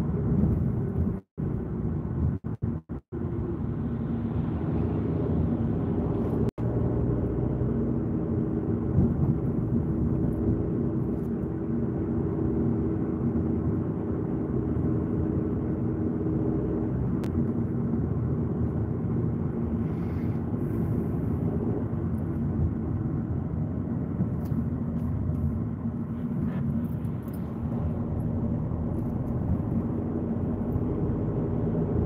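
Steady rumble of a car driving at low speed, heard from inside the cabin: engine hum and tyre noise. The sound cuts out briefly several times in the first seven seconds.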